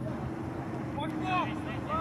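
Distant shouting voices over a steady low rumble of outdoor background noise; the shouts start about a second in.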